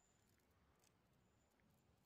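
Near silence: faint background noise with a few faint ticks.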